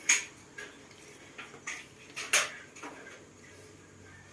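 Sharp clicks and clinks from a hanging saucer swing's fittings as a macaque shifts about on it, about half a dozen spread irregularly, the loudest a little past two seconds in.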